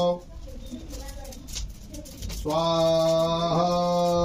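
Conch shell (shankh) blown in long, steady notes: one ends just after the start, and another begins past halfway. Each note steps slightly in pitch partway through.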